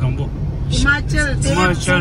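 A person talking inside a moving car, over the steady low rumble of engine and road noise in the cabin; the talking starts about a third of the way in.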